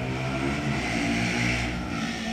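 Steady low electrical hum from the hall's sound system, a few even tones held without change.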